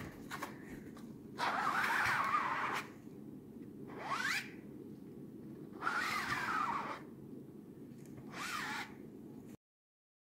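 Rubber squeegee dragged across an inked silk-screen mesh in four strokes, each a scraping squeak of half a second to a second and a half, the second rising in pitch. The sound cuts off suddenly near the end.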